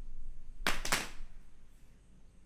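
Two quick hand claps about a quarter second apart, with a short room echo.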